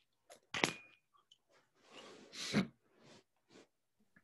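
The song is not heard, because its sound is not being shared. Only a few scattered noises come through an open microphone: a sharp click about half a second in and a short breathy noise about two seconds in.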